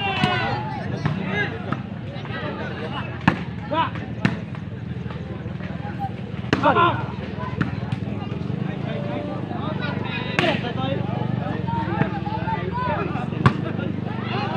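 A ball being struck again and again during a rally, giving sharp smacks at irregular intervals, about half a dozen in all, over the steady chatter and calls of a large crowd.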